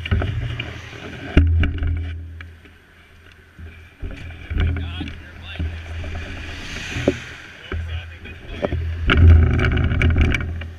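Wind buffeting an action camera's microphone on a parked mountain bike, in low rumbling gusts every second or two, with sharp clicks and knocks from the bike and camera being handled. Muffled voices come through near the middle and the end.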